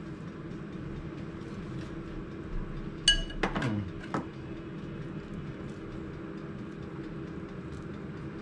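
Kitchen food prep with a steady low hum throughout. About three seconds in, a single bright clink of a utensil against a ceramic dish, followed by a few softer knocks.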